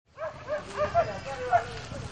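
A dog barking in a quick run of short, high yips, about six in two seconds, over low street noise.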